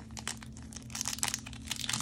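Foil booster pack wrapper being torn open and crinkled by hand: a dense run of crackles that gets busier about a second in.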